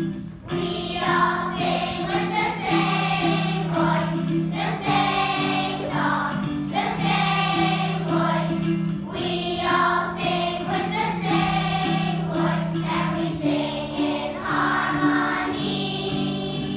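Children's choir singing together in phrases over a steady instrumental accompaniment of held low notes, starting about half a second in.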